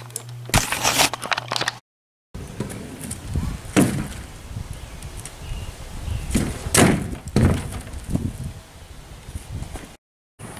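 Kick scooter wheels rolling with a low rumble, broken by a few sharp clacks as the scooter hits a plywood board and the ground, the loudest around the middle. It opens with a brief rustle of the camera being handled.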